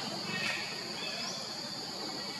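Steady high-pitched insect drone, with a couple of faint short rising chirps over it.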